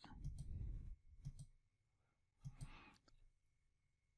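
Faint computer mouse button clicks, a few sharp clicks spread through an otherwise near-silent stretch, as menu items are picked in a drop-down list.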